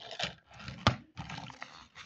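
Paper notebook and pen being handled: scratchy rustling in short bursts with one sharp click about halfway through.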